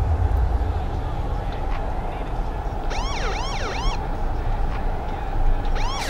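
Police car siren giving short yelps, quick rising-and-falling sweeps for about a second three seconds in and again near the end, over steady road noise inside a moving car.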